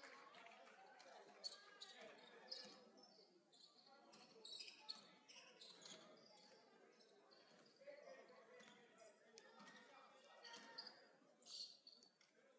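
Very faint live basketball game sounds in a gym: a ball bouncing, scattered short squeaks and distant voices.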